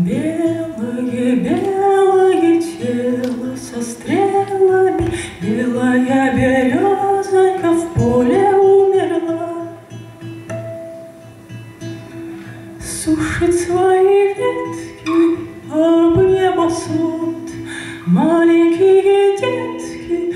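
A woman singing a Russian bard song to her own acoustic guitar accompaniment, in phrases of about two seconds with sliding, held notes.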